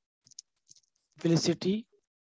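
A man's voice speaks a short phrase starting a little past a second in, preceded by a few faint, high clicks.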